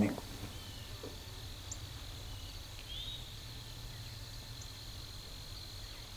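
Quiet open-field ambience: a steady thin high insect drone over a faint low rumble, with a couple of brief faint bird chirps, one about three seconds in.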